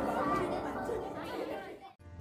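Chatter of a group of children and adults in a large hall as piano music fades out; it dies away to near silence just before the end.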